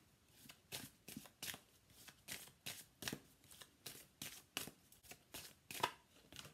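Faint hand shuffling of a deck of large oracle cards, a soft card slap about three times a second.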